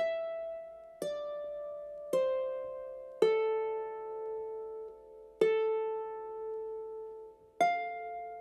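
Solo harp playing slow single plucked notes, each left to ring out, about one note a second at first. The first four notes step down in pitch, then after a longer gap the line climbs back up near the end.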